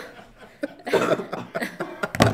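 A few people laughing: quiet at first, then short bursts from about half a second in.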